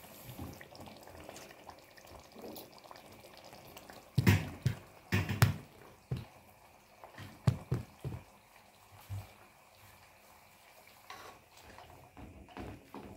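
Tomato stew simmering in a pot, bubbling softly, with several knocks and thumps, the loudest a cluster about four to five and a half seconds in.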